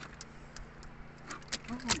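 Steady low hum of a boat engine running, with scattered light clicks and knocks from handling in the boat; a man's voice starts near the end.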